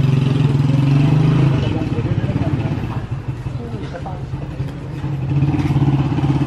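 Motorcycle-and-sidecar tricycle's small engine running with a low, pulsing note. It is loudest in the first second and a half, fades, and grows louder again near the end.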